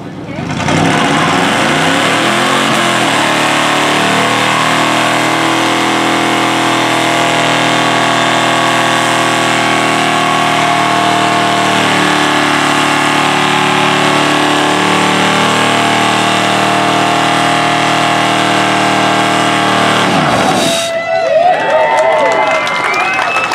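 1995 Cadillac V8 revving up and held at high revs through a tyre-smoking burnout, its spinning rear tyres adding a hiss. The engine drops off suddenly about twenty seconds in.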